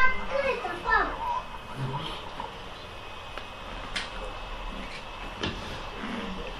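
A young child's high voice calling out in the first second, then quieter child vocal sounds, with two sharp clicks later on.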